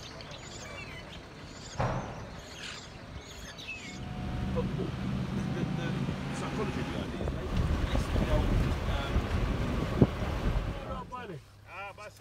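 Superb starlings chirping for the first few seconds. Then a vehicle engine starts running with a steady low hum and wind on the microphone, and a single sharp knock comes near the end.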